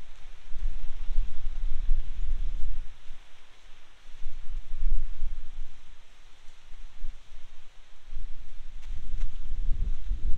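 Wind buffeting the microphone in gusts: a low rumble that swells and eases several times, with a lull about halfway through.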